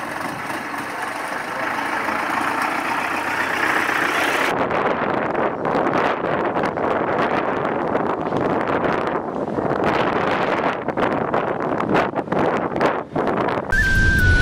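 Vehicle engine running amid outdoor street noise. About four and a half seconds in the sound changes abruptly to a duller, uneven rushing noise.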